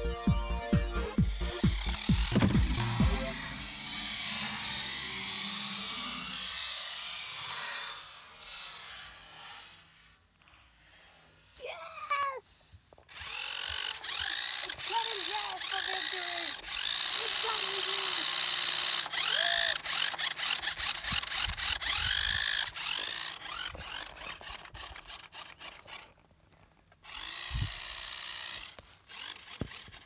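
A short electronic music sting, then a toy electric RC off-road buggy's motor whining in repeated bursts of throttle, its pitch rising and falling with each burst.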